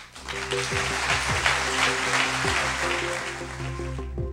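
Audience applauding, with instrumental music starting up beneath it. The applause thins out toward the end while the music goes on.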